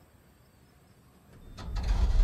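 Near silence, then a deep rumble that swells quickly in the last half-second: the start of a film sound effect of a junked car being crushed by telekinesis.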